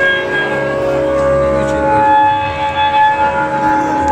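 Live band playing the opening of a song: electric guitar and bass hold long, sustained chords with little percussion, and a new high note comes in about halfway through.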